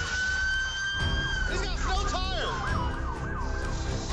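More than one police car siren sounding over traffic: a long held wail that rises slowly for the first second and a half, then quicker overlapping rising-and-falling wails about halfway through.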